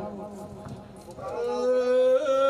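A man's singing voice: after a short lull, he begins a long, steady held note about a second in.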